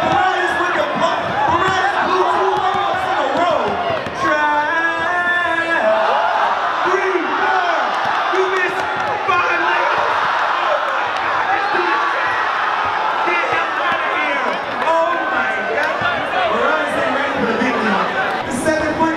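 Spectators' crowd noise in a large hall: many voices talking and calling over one another, with one voice holding a long shout about four seconds in.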